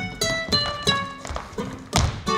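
Ukulele strummed in short, choppy chords, about two to three a second, with a heavy thump at the very end.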